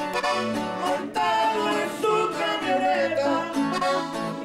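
Two men singing a norteño corrido in duet, backed by accordion and guitar.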